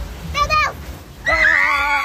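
A short high cry, then a man's long, loud yell held at a steady pitch, starting a little past halfway.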